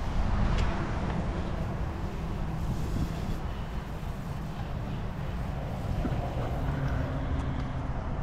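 A motor or engine running steadily with a low, even hum, with a few light clicks over it.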